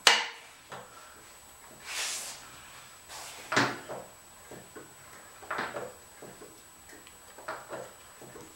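Handling noises of hands and tools working on the car: a sharp click at the very start, a short hiss about two seconds in, then scattered clunks and scrapes.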